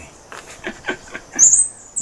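A brief high-pitched chirp from a small animal about one and a half seconds in, amid a few short soft sounds.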